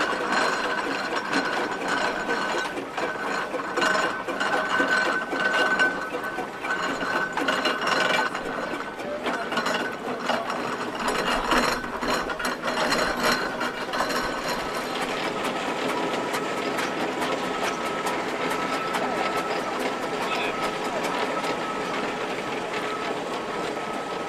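Steam traction engines driving past at walking pace, with the close, continuous clanking and rattling of their gearing and motion work.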